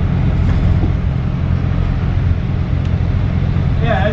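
Steady low engine hum and road noise from inside a moving bus.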